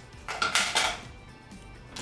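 Scissors and other small tools clattering as they are pulled out of a waist pouch and set down on a table: two short bursts of clinking about half a second in.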